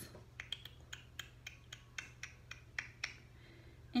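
Light, irregular clicks and taps of a product card and its packaging being handled, about a dozen over three seconds.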